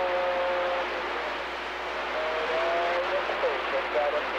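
CB radio receiver hiss on an open channel, with steady whistling tones for the first second or so, then warbling, sliding tones and garbled fragments of distant transmissions from about two seconds in.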